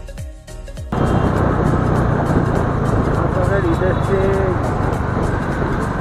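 Background music for about the first second, then it cuts off suddenly to loud, steady wind noise on the microphone and the rumble of a motorcycle riding in traffic. A voice comes through the wind in the second half.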